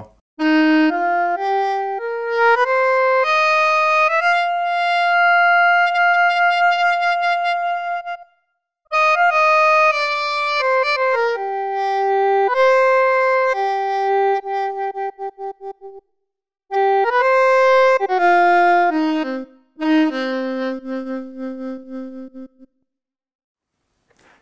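Odisei Travel Sax, a 3D-printed digital saxophone, sounding the app's alto saxophone voice as it is blown and fingered. A rising run of notes leads into one long held note. After a short break come further phrases that step down to a low held note, with some notes pulsing quickly.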